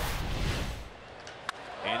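A swooshing transition sound effect with a deep low rumble, fading out about a second in. A short click follows, and a man's voice starts right at the end.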